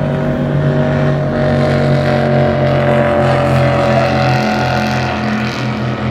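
Racing powerboats running at speed, a loud steady engine drone with a slight drop in pitch as they go by.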